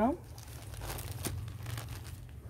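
Faint rustling of a folded saree's fabric as a hand smooths and pats it, with a few light scrapes around the middle.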